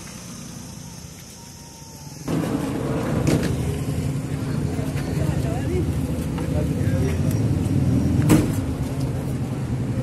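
A vehicle engine idling steadily close by, with people talking over it; it gets suddenly louder about two seconds in. A single sharp knock comes near the end.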